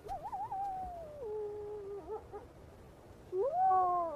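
Gray wolf howling: a howl that begins high and wavering, then slides down to a long held low note, followed near the end by a second howl rising in pitch.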